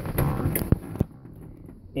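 Two sharp clicks about a third of a second apart, as a hand goes to a manual gear shifter, over a faint low rumble in a vehicle cab.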